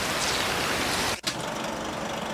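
A steady hiss like rain or pouring sand cuts off abruptly a little past a second in. It gives way to the quieter, steady running of a film projector.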